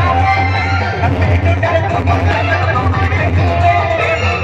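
Loud music with a heavy, steady bass, played through a DJ sound system's stacked horn loudspeakers.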